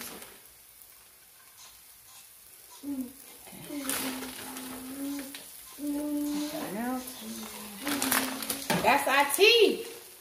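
A voice humming without words in long held notes from about three seconds in, the notes bending up and down near the end, over a light sizzle of eggs and sausage frying in a pan.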